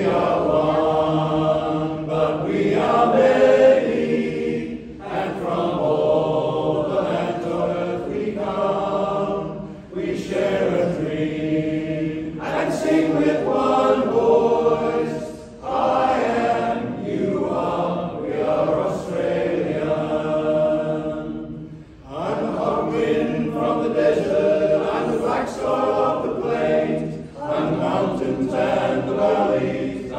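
Men's barbershop chorus singing a cappella in close harmony, phrase after phrase with brief dips between them.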